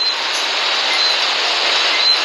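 Ocean surf, a steady rushing wash of waves, picked up by a phone's microphone.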